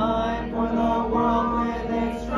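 A congregation of men and women singing a hymn together in unison, holding each note before stepping to the next.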